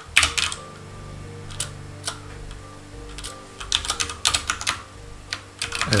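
Typing on a computer keyboard: scattered single keystrokes, then a quicker run of keys about four seconds in, over a faint steady hum.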